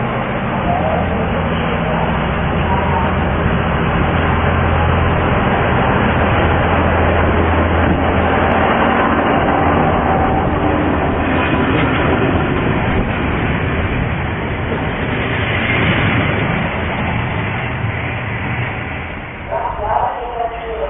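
Diesel railcar train pulling out and passing close by, its engine's low steady drone under the rumble of wheels on the rails, easing off near the end as it moves away.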